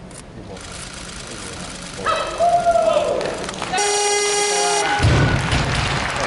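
Arena crowd shouting during a snatch, then a steady electronic buzzer for about a second, the referees' down signal for a completed lift. The bumper-plated barbell then drops onto the wooden platform with a heavy low thud, and the crowd cheers.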